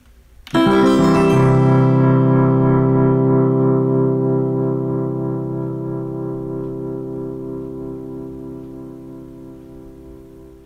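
Closing logo music: a single keyboard chord struck about half a second in, with lower notes joining within the first second. The chord is then held and slowly fades away.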